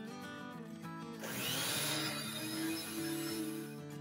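Soft background music, with an electric hand mixer whirring faintly from about a second in until just before the end as it beats egg whites toward stiff peaks.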